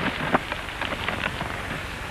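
Crackling and rustling of a cereal box's paper liner being torn open, with a few sharp crinkles early on, over the hiss of an old film soundtrack.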